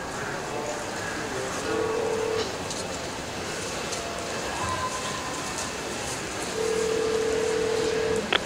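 Sound-effects interlude in a produced hip-hop track: a steady noisy bed with a few held electronic beeps, a short one about two seconds in, a higher brief one midway, and a longer one near the end.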